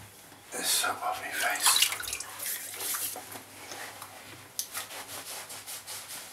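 Water from a bathroom tap splashing in a sink as the face is rinsed after a wet shave, in irregular splashes loudest in the first half. Near the end, a towel rubbing the face dry.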